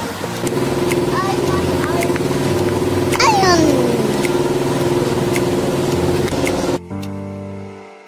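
A steady, droning hum with a single voice-like call about three seconds in that slides sharply down in pitch. The sound cuts off abruptly shortly before the end, leaving soft background music.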